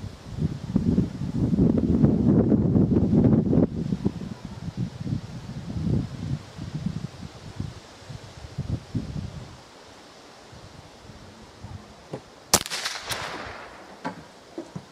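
A single .22 shot cracks out about twelve and a half seconds in and bursts an aerosol can of spray cheese. About a second of noisy spray follows, with a second, fainter crack. Before the shot, wind buffets the microphone with an uneven low rumble.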